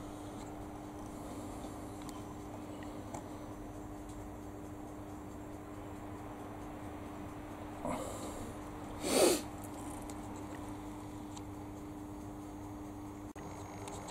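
Steady low mains-electrical hum from the lamp test rig under load. About nine seconds in, a person sniffs once, with a fainter breath just before it.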